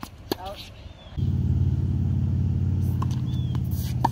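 Tennis ball struck by rackets in a hard-court rally: a sharp pop shortly after the start, a fainter one from the far side about three seconds in, and another right at the end, with short high sneaker squeaks between. A steady low drone starts about a second in and is the loudest sound.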